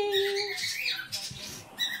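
Cockatiel giving a few short squawks and chirps, after a person's held voice note at the start.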